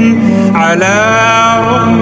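Male voice singing an Arabic nasheed: a long, drawn-out melodic line that bends in pitch, over a steady low sustained note.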